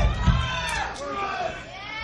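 Several voices yelling and shouting over one another, with whoops that rise and fall in pitch, and a low boom that dies away in the first half second.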